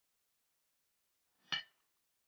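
Near silence, broken by a single short clink about one and a half seconds in: metal serving tongs knocking against a china plate or dish.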